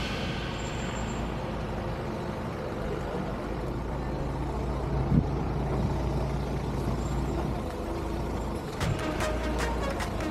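Engine of a Toyota Land Cruiser Prado (70-series) running at low revs as it crawls down a rocky dirt slope, a steady low rumble with one thump about five seconds in as the truck's tyres or suspension take a rock step.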